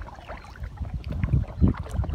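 Water lapping and splashing against an inflatable Intex Challenger K1 kayak as it is paddled, with low rumbling wind on the microphone. The sound swells in the second half, loudest about one and a half seconds in.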